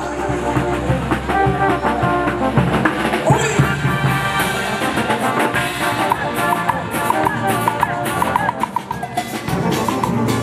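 Andean brass band playing a hualaycho dance tune: sousaphones, trumpets and a drum kit keeping a steady dance beat.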